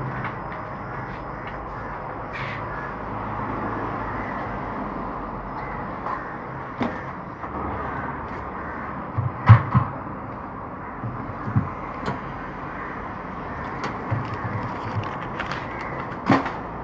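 Steady background noise with scattered sharp knocks and taps, the loudest about nine and a half seconds in, as an acrylic poster panel is handled and pressed against a wall.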